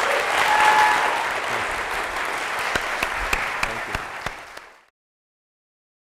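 Audience applauding, strongest in the first second, with a short held tone rising above the clapping early on; the applause fades away about five seconds in.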